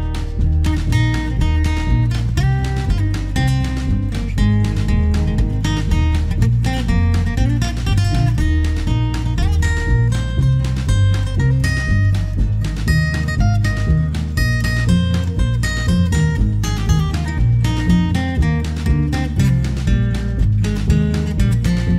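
Background music: an acoustic guitar instrumental, plucked and strummed.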